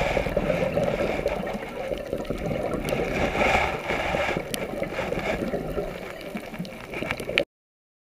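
Underwater sound picked up by a camera: the gurgling and bubbling of a scuba diver's breathing, with scattered sharp clicks. The sound cuts off suddenly near the end.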